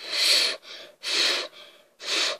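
Short puffs of breath blown through pursed lips onto the twin propellers of a Lego toy boat's motor, coming as three separate breathy blows.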